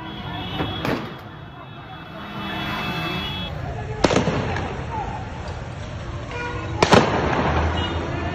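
Gunshots from a long gun: three sharp bangs about one, four and seven seconds in, the last the loudest.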